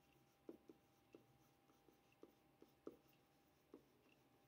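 Near silence with faint, irregular taps and scratches of a stylus handwriting on a tablet, about seven short ticks over the few seconds.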